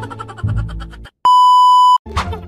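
A loud, steady censor bleep: a single flat tone at about 1 kHz, starting abruptly after a brief dead silence about a second in and held for roughly three-quarters of a second before cutting off. It is dubbed over the talk to hide a spoken comeback spoiler.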